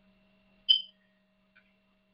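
A faint steady electrical hum, with a single short, high-pitched click about two-thirds of a second in and a much fainter tick near the end.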